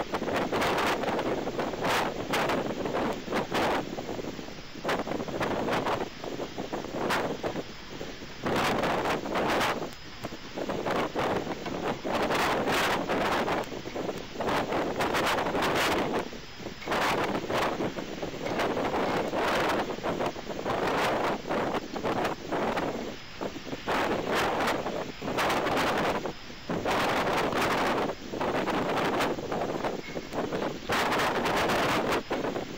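Wind gusting against an outdoor nest-camera microphone: a continuous rushing noise that rises and dips every second or two, with rapid buffeting.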